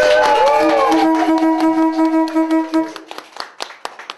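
A loud horn-like celebratory blast: pitches swoop up at the start, then several tones are held together for about three seconds. Hand clapping follows near the end.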